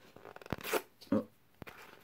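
Paper envelope being handled and torn at: a few small clicks, then a short papery rip about half a second in and a sharp click later on. The tear fails to open it.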